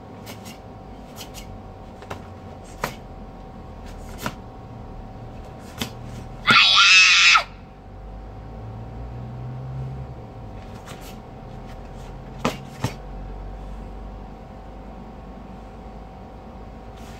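A karate kiai: one loud shout, under a second long, about six and a half seconds in. Several sharp snaps of the karate gi come with the strikes of the kata before and after it.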